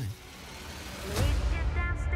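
Trailer score and sound design: a deep low rumble swelling up, a sharp hit about a second in, then a sustained chord of held tones.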